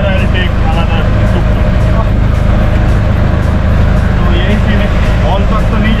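Tuk-tuk's small engine running steadily as the three-wheeler drives, a loud low drone heard from inside its open cabin.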